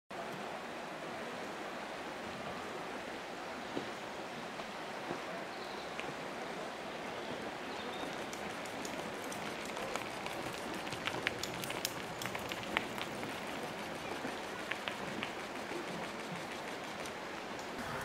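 River water rushing steadily over shallow gravel rapids, an even hiss of flowing water with faint scattered clicks in its second half.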